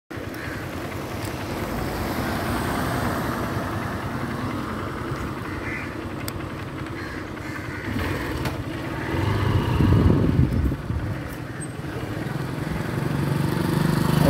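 A motorcycle engine running while riding along a city street, with street traffic around it. The low engine rumble swells louder about two-thirds of the way in, then settles.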